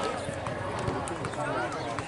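Several voices talking and calling out at once, overlapping and indistinct, with a few sharp clicks among them.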